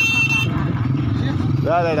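A motor vehicle's engine running with a steady low rumble. A high steady tone stops about half a second in, and a man's voice comes in near the end.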